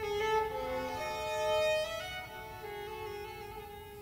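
Solo violin playing slow, held notes that move step by step, sometimes two notes sounding together.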